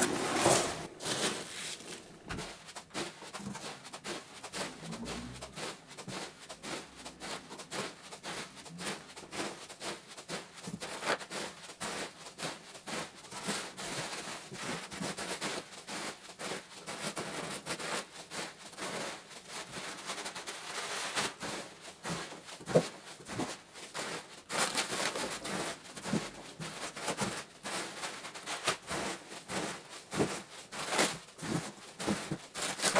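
Polystyrene packing peanuts rustling and clicking as hands scoop them out of a cardboard box, a dense, irregular crackle.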